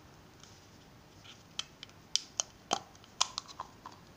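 Handmade wooden matchstick box being handled as its friction-fit lid is worked open: a series of sharp clicks and small knocks of wood under the fingers, irregular and a few a second, starting about a second in.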